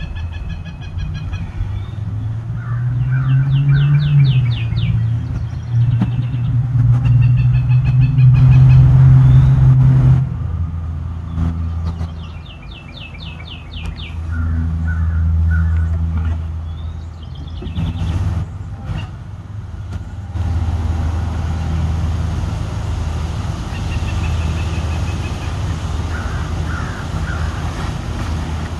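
Birds singing in quick runs of repeated chirps over a continuous low drone that swells and fades, with a few sharp knocks near the middle.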